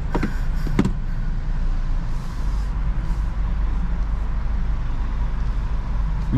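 Steady low engine and road rumble of a slowly moving car, heard from inside the cabin, with two brief sharp sounds in the first second.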